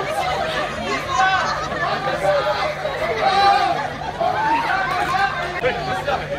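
Overlapping voices of an audience talking among themselves during a stage show, with a steady low hum underneath.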